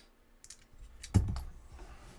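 Plastic LEGO pieces clicking and tapping as they are handled and pressed together, a few light clicks and one sharper knock a little past the middle.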